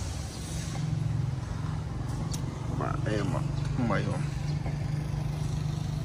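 Kubota ZT140 single-cylinder diesel engine running at a steady idle, a low, even chugging that grows a little louder just under a second in.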